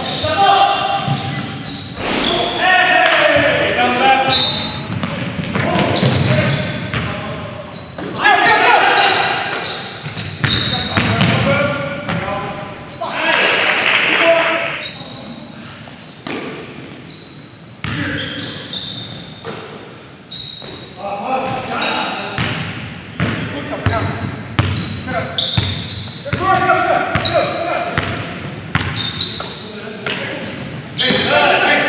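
Live basketball game sound in a large gym: players' voices, with a basketball bouncing on the hardwood floor, in a hall echo. The sound changes abruptly at several edit cuts.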